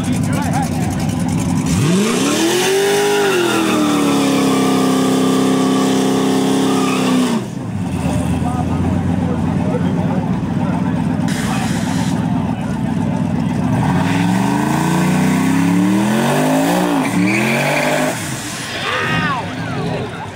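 V8 street-race car doing a burnout: the engine revs up about two seconds in and is held at steady high revs for several seconds while the tyres spin. It is followed by a rough, noisy stretch, then the revs climb several more times near the end.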